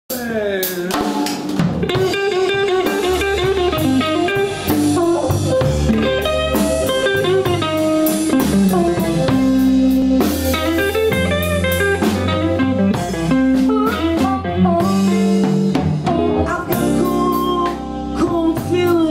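Live blues band playing an instrumental passage: electric guitar over bass guitar and drum kit.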